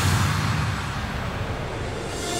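Electronic dance music transition: after the bass drop cuts out, a noise sweep fades away and grows duller, over a faint low pulse.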